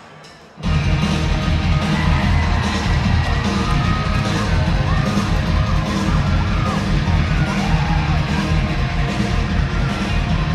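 A live rock band starting a song: after a brief hush, guitars and drums come in loudly under a second in and keep playing.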